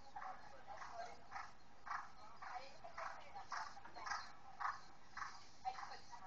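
Horse cantering on an arena surface, its strides coming in an even rhythm of about two a second, heard through a screen's speaker.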